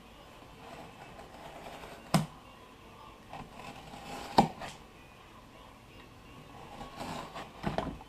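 A knife slicing through woven cloth fire hose on a plywood board: a low scratchy cutting noise with sharp knocks about two and four seconds in and again near the end.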